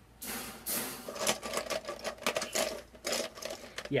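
Black metal wire grid panels and their connectors rattling and clicking as they are handled, a fast irregular run of clicks lasting about three and a half seconds.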